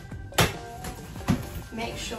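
A sharp plastic click about half a second in, then a softer knock a little after a second: the pram hood being clipped onto the bassinet and handled, with background music underneath.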